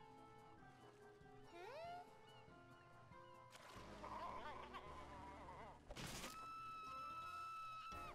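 Faint cartoon soundtrack: light background music with a rising gliding sound effect, a wavering noisy stretch in the middle, a sharp hit about six seconds in, then a long held high tone.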